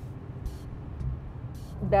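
Steady low road rumble of a car driving on a highway, heard from inside the car.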